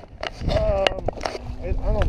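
A person calling out wordlessly in short exclamations, over a low rumble of wind on the microphone and a few sharp knocks about a second in.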